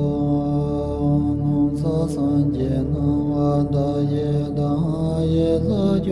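Background music: a sung mantra chant, voices gliding over sustained steady drone tones.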